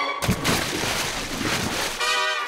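Cartoon water-splash sound effect: a steady, noisy rush of churning water, with a few soft knocks.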